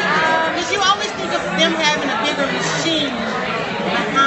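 A woman talking close by over the steady chatter of a crowd.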